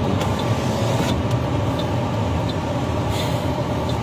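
Steady low rumble of a car heard from inside its cabin, with a few faint ticks.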